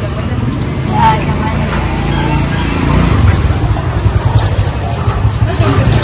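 A vehicle engine running close by, a low rumble that grows louder about halfway through, under indistinct voices.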